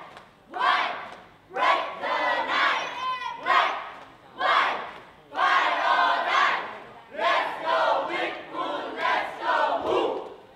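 A cheerleading squad shouting a cheer in unison, in short chanted phrases with brief gaps between them.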